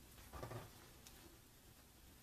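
Near silence: a faint steady sizzle of dough pieces deep-frying in hot ghee, with a soft brief sound about half a second in.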